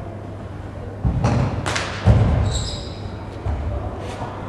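Dull thuds in a large hall: two heavy ones about one and two seconds in, and a lighter one near the end. A brief high squeak falls between them, over a steady low hum.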